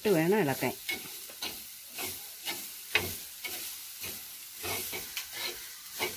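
Spoon stirring and tossing shredded red cabbage in an earthenware pot on a gas flame: repeated scraping strokes, a few a second, over a light sizzle. A voice is heard briefly at the start.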